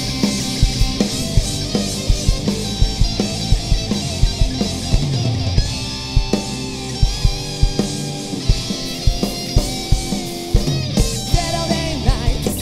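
Live rock band playing an instrumental passage: a drum kit keeping a steady driving beat under electric guitars and bass guitar, with no singing.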